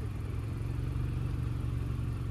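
A car engine running steadily at idle, a low even hum.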